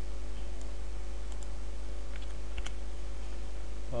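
A few faint, short computer keyboard clicks, spaced irregularly, over a steady low hum.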